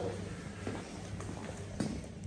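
A few faint, light taps and clicks on a hard tiled floor over quiet room noise.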